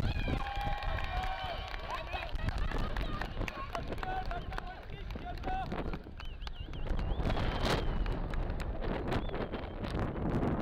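People shouting and calling out, with the loudest, long drawn-out calls in the first two seconds and shorter shouts after. Wind buffets the microphone throughout.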